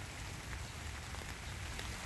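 Faint steady hiss of outdoor background noise, with a few soft ticks.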